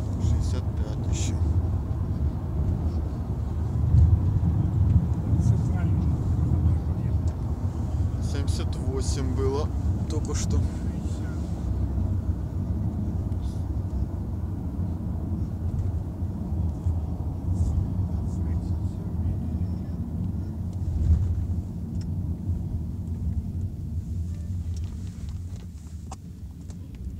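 Car cabin noise while driving: a steady low rumble of engine and tyres on the road, with a few faint clicks and knocks.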